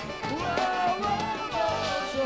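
Forró band playing live: a melody line over bass notes and a steady beat.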